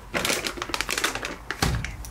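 A crinkly plastic bag of cat treats being handled, making a fast run of crackling clicks, with one louder thump near the end.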